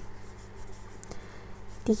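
Faint scratchy rubbing of a crochet hook working yarn through stitches, with a few light ticks; a voice starts near the end.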